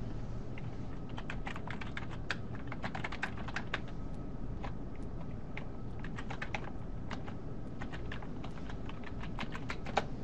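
Typing on a computer keyboard: a run of irregular key clicks over a steady low hum.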